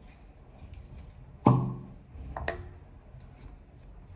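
A plastic toiletry bottle is knocked against a ceramic bathroom sink, a single sharp knock with a short ringing decay. A lighter click from the bottle's cap follows about a second later.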